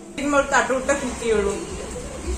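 Short spoken phrases in a voice, with a low rumble underneath from about halfway through.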